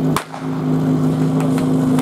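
Portable fire pump's small engine running steadily at one speed. A single sharp crack sounds just after the start.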